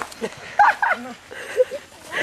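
A few short, loud shouts from onlookers urging on the pullers in a rope tug of war.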